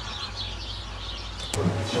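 A large flock of waterfowl calling as they fly over, a distant massed chorus of many overlapping calls. About one and a half seconds in, it cuts off with a click and gives way to a louder low rumble.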